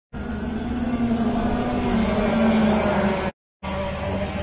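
Racing kart engines running, a steady drone made of several held pitches that drift slightly up and down. The sound cuts out abruptly for a moment near the end.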